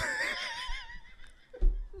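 A person laughing in a high pitch, fading out within about a second. A brief low thump follows near the end.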